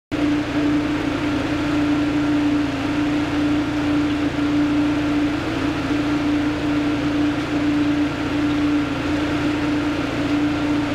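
A running engine or motor-driven machine droning steadily, with a constant low hum over a rumble.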